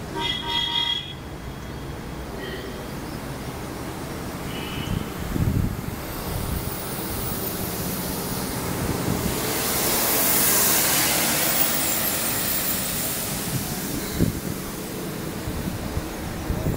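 Road traffic on a hill road: a vehicle horn sounds for about a second right at the start, and two short, fainter horn toots follow, over a steady low engine rumble. A rush of noise swells and fades in the middle.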